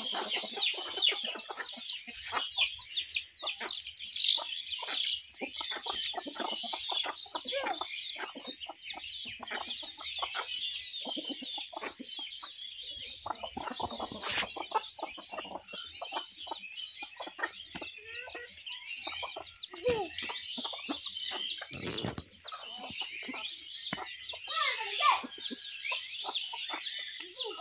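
A flock of domestic chickens feeding: a constant chorus of high peeping from chicks, with hens clucking here and there.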